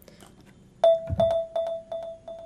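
Marimba sample played through FL Studio's Fruity Delay 2: one struck note about a second in, followed by echoes of the same pitch at about four a second, each fainter than the last. The delay's stereo offset is turned up.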